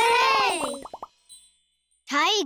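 A short cartoon sound effect: a falling pitched tone with a few quick plopping pops, lasting about a second, then cutting off.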